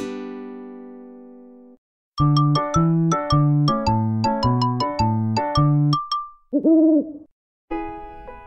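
The last chord of a children's song fades out. After a short gap, a brief jingle of quick keyboard notes plays and ends with a single cartoon owl hoot. New music starts just before the end.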